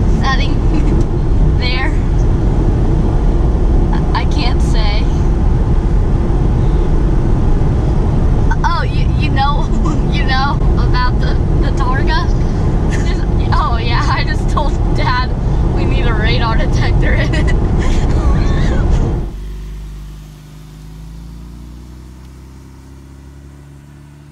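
Steady low road and engine rumble inside the cabin of a Porsche 911 Targa 4 GTS on the move. About 19 seconds in, it gives way to the car heard from outside as it pulls away, its twin-turbo flat-six rising in pitch and fading.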